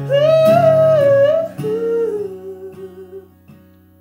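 A man singing a drawn-out wordless vocal line over a strummed acoustic guitar; the voice steps down to a lower held note and fades out about three seconds in, leaving the guitar chord ringing softly.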